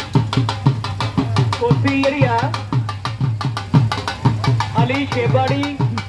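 Dhol drumming in a fast, steady rhythm: deep booming strokes on the bass head mixed with sharp cracks from the stick on the treble side. A brief wavering higher sound rises over the drumming twice, about two seconds in and again near the end.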